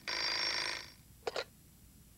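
Telephone bell ringing, the ring cutting off about a second in, followed by a brief click.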